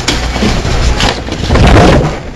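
Rustling and knocking right up against a close desk microphone, with a knock at the start and another about a second in, and the loudest rustling near the end.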